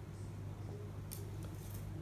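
Marker pen scratching on a paper chart as a word is written, with short scratchy strokes about a second in and again near the end, over a low steady hum.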